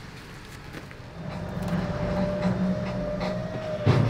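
A vehicle engine running low and steady as the old fire truck is moved across the yard, setting in about a second in with a thin whine above it, and a sharp clunk just before the end.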